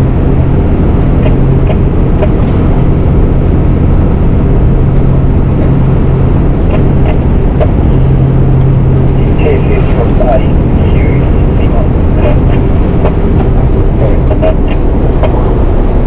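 MAN 4x4 truck's diesel engine running steadily as the truck drives at road speed. The sound is a loud, constant low drone mixed with road and wind noise.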